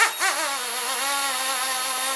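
The OMP M2 V2 micro helicopter's electric main and tail motors running on the bench with the blades off, making a steady buzzing whine at one even pitch.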